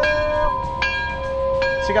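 A bell struck three times, each strike ringing on over a held tone.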